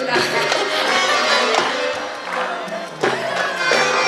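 Live Arabic pop music from a full orchestra with violins, with sharp percussion strokes over the strings.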